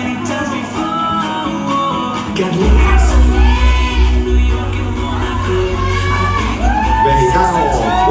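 A song with singing over it; a heavy, pulsing bass beat comes in about a third of the way through.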